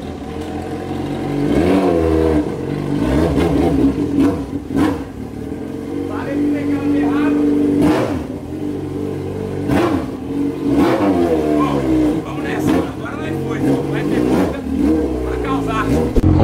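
Yamaha XJ6 motorcycle's inline-four engine running and being revved, its pitch rising and falling several times, with a steadier held rev around the middle.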